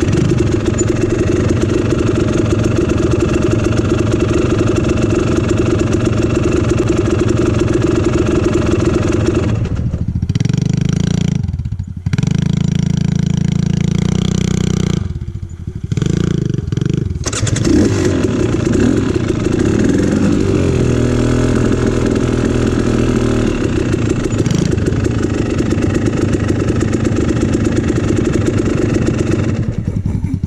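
Dirt bike engine running, heard from the rider's own seat, with the throttle opening and closing. It drops back toward idle twice, about a third of the way in and again around the middle, then pulls up again. It falls back once more at the very end.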